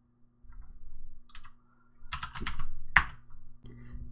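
Keystrokes on a computer keyboard typing a short terminal command: scattered key clicks, a quick run of keys about two seconds in, then one sharper key press near the end.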